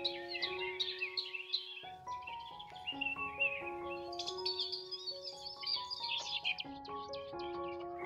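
Soft background music of slow, held notes, with songbirds chirping over it throughout.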